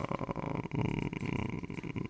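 A man's drawn-out, creaky hesitation vowel, a held "э-э-э" between words, lasting about two seconds.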